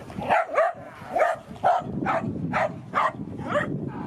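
A small dog, a dachshund, barking about eight times in quick succession, roughly two sharp yaps a second.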